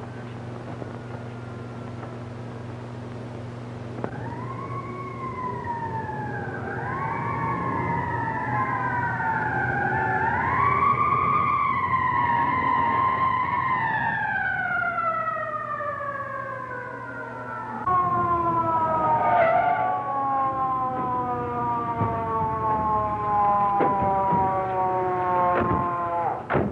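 Police car sirens winding up, rising and wavering, then falling slowly. A second siren joins about two-thirds of the way in and falls with the first. A few sharp knocks come near the end.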